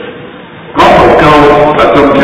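A man's voice speaking, resuming after a short pause of under a second.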